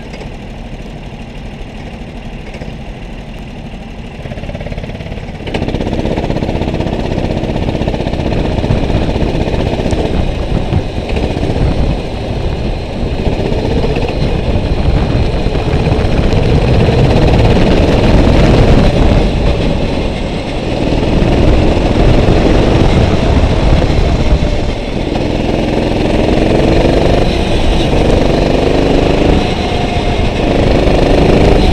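Go-kart engine idling, then opening up about five seconds in and running hard, its pitch rising and falling over and over as the throttle comes on and off.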